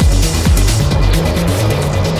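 Hard techno from a DJ mix. A kick drum hits about twice a second and drops out about half a second in, leaving a stepping bass line and ticking hi-hats.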